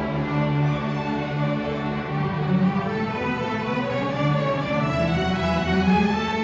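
School string orchestra playing: violins, violas, cellos and double basses bowing sustained notes together, with the low parts changing notes about two seconds in.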